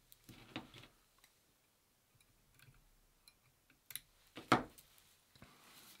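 Faint, sparse clicks and small handling noises of fly-tying work at the vise: thread, hackle and tools being handled. A louder brief click-like sound comes about four and a half seconds in.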